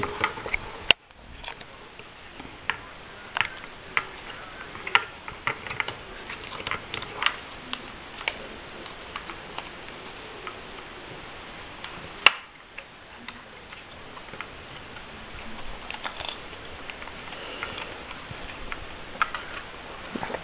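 Irregular small clicks and ticks from a homemade rubber-band car's wheels and axles as they are turned by hand to wind its rubber bands tight, with two sharper clicks about one second in and about twelve seconds in.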